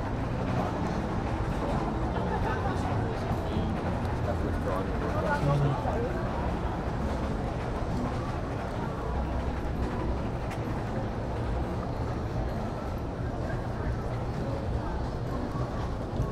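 Pedestrian street ambience: scattered voices of passersby talking over a steady low background hum of the city.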